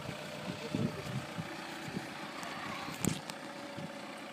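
Vauxhall Vectra's engine idling quietly as the car rolls slowly in neutral, with a brief knock about three seconds in.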